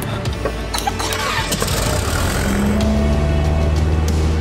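A single-engine light aircraft's propeller engine starting and building up, under background music. Its noise swells about a second in and settles into a steady low drone in the second half.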